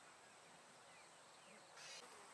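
Near silence: faint ambience with a thin steady high tone, a couple of faint falling chirps about a second in, and a short hiss near the end.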